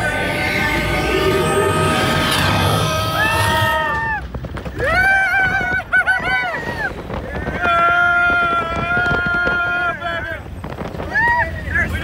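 Riders screaming and whooping in several long, high-pitched yells as the ride car speeds up, over a steady low rumble of wind and the moving vehicle.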